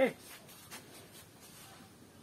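Faint, short taps and strokes of a marker on a whiteboard, a few of them spaced about half a second apart, after one spoken word at the very start.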